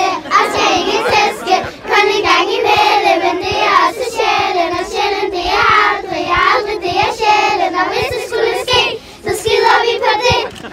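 A group of young girls singing together in high voices, a continuous song with a brief break about nine seconds in.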